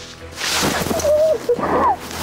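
Background music with excited high-pitched voices, one rising and falling in a squeal near the end.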